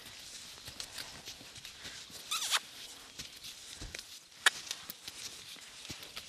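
Soft hoofbeats of a horse and a handler's footsteps walking on a sand arena. There is a short hissing burst about two and a half seconds in and a single sharp click about two seconds later.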